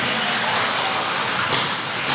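Radio-controlled off-road race cars running on a dirt track: a steady high hiss with no clear engine note, and one sharp click about one and a half seconds in.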